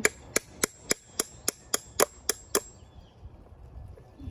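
Hammer tapping a screw through the bottom of a plastic cup to punch a hole: about ten light, evenly paced strikes, three or four a second, that stop a little past halfway.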